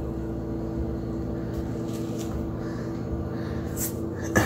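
A steady mechanical hum fills the small tiled room, with a few faint, brief rustles as a medical silicone scar pad is peeled off the skin of a foot.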